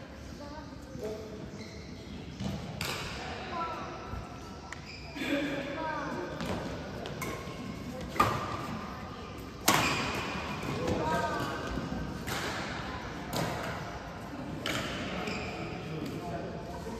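Badminton rally: racket strings striking the shuttlecock, sharp hits every second or so, the two loudest about eight and ten seconds in, echoing in a large hall.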